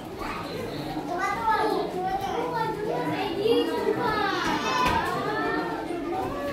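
Children's voices and chatter throughout, with one child's drawn-out high call rising and falling about four seconds in.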